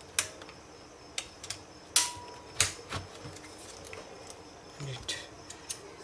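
A string of sharp plastic clicks and knocks, about eight in all, the loudest about two seconds in: a Dell Vostro laptop's battery latches being slid and its battery pulled out, then the laptop turned over and opened.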